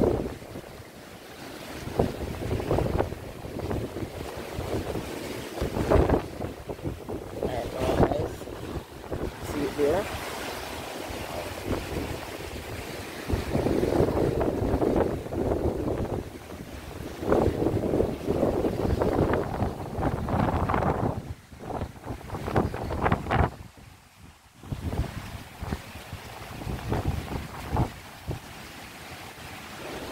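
Gusty onshore wind buffeting the microphone over rough surf washing onto the shore, the rising wind ahead of an approaching hurricane. It comes in uneven surges and eases briefly a little over twenty seconds in.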